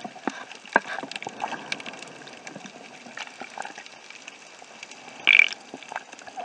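Underwater sound picked up by a diving camera: a steady hiss with scattered short clicks and crackles, and one short, louder rush of water noise about five seconds in.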